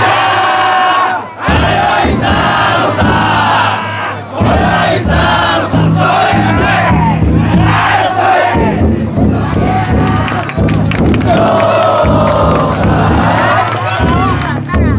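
A crowd of Banshu festival yatai bearers shouting together at full voice as they heave the float, the yells coming in repeated surges.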